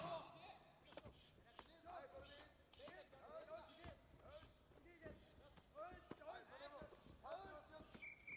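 Faint, distant voices calling out from around a large hall, with a few soft thuds.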